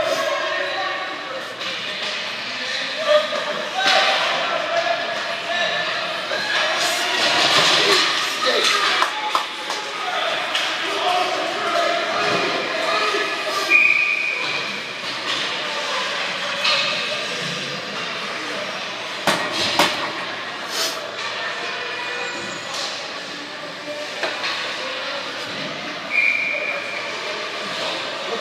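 Ice hockey rink sound: spectators talking and calling out, with sharp knocks of pucks and sticks against the boards, and two short referee whistle blasts, one about halfway through and one near the end.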